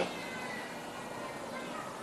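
Low steady room noise in a pause between a man's sentences, with faint thin whining tones.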